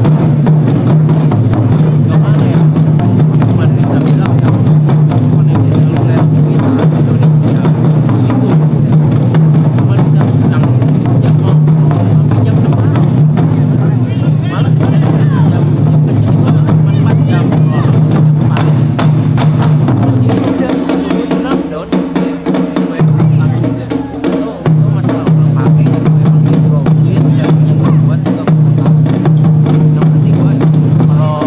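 Taiko ensemble drumming: many barrel-shaped taiko drums struck fast and hard with wooden sticks in a dense, loud, continuous rhythm. The deep booming drum tone drops out briefly about 21 seconds in, and again about 24 seconds in, while lighter strikes go on.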